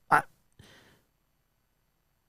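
A man's brief nasal vocal sound, a soft exhale, then dead silence from about a second in.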